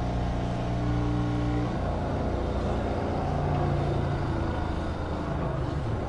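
Hydraulic pump unit running steadily, pushing pressurized fluid into the coax cable to drive its core out through the extraction fitting; its hum changes tone about two seconds in.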